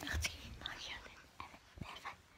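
A person whispering softly, with a couple of short clicks just at the start.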